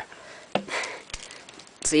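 A sharp click about half a second in, then a short sniff, with a few faint clicks of a plastic action figure being handled.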